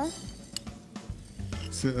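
A spoon clicking a couple of times against a bowl as hydrated granulated tapioca is scooped into a frying pan, over faint background music.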